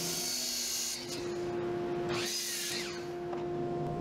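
Miter saw cutting through pine leg blanks: two short cuts, one for about the first second and another a little past two seconds in, its motor pitch rising and falling. A steady hum runs underneath.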